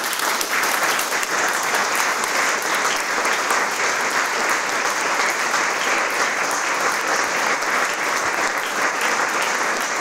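A large audience applauding steadily, many hands clapping at once.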